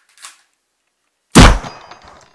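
A single very loud, sharp bang from the pistol being fired, about one and a half seconds in. It rings metallically as it dies away over about half a second. A faint rustle of the gun being handled comes just before.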